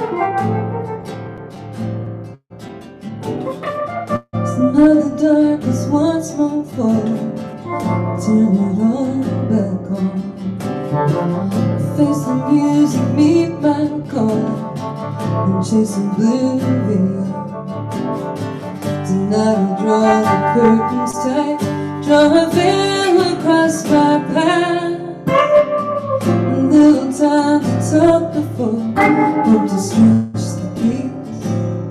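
Live song by a guitar duo: a woman singing a melody over her strummed acoustic guitar, with a semi-hollow electric guitar playing alongside.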